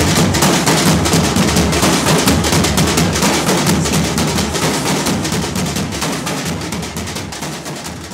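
Nashik-style dhol drumming by a marching troupe: many large barrel drums beaten together in a fast, dense rhythm, gradually fading out.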